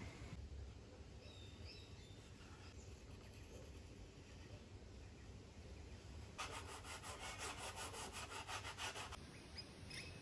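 A small hobby-knife blade shaving a glued-on balsa wood strip, trimming it to shape: quick repeated scraping strokes, about four a second, for a few seconds in the second half. Before that it is nearly quiet, with a faint chirp or two.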